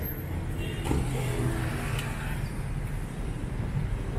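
City street traffic: a car driving past close by, its engine loudest about a second in, over the general noise of the road.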